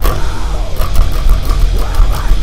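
Heavy metal song with drums and distorted guitars, the full band coming back in at once at the start, and an electric bass played along with it.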